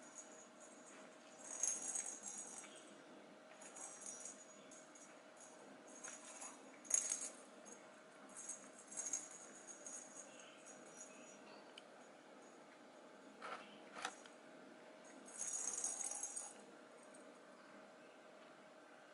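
Jingle bell inside a perforated plastic cat toy ball, rattling in about five short bursts as kittens bat and roll it, with a few sharp clicks of the ball knocking about.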